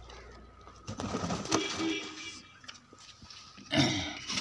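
Domestic pigeons cooing inside a cloth-covered wooden coop, mixed with rustling and scraping. A louder knock comes near the end.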